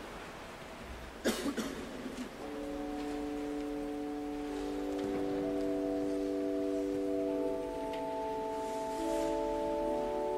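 A single knock about a second in, then a pipe organ starts playing softly, its notes entering one after another and held as slow sustained chords, the music for the preparation of the gifts after the bidding prayers.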